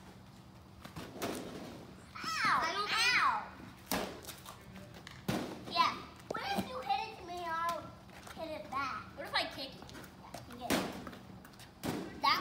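Children's voices, including high squealing calls, with a few separate sharp thuds as an Orbeez-filled balloon is hit and lands on a concrete driveway.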